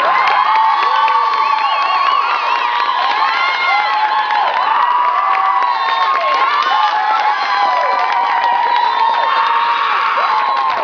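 Audience cheering loudly and continuously at the end of a sung performance: many overlapping high-pitched screams and whoops from girls and women, with clapping underneath.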